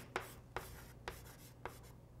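Chalk writing on a blackboard: four short, sharp taps and scrapes as the chalk strikes and drags across the board, with light scratching between strokes.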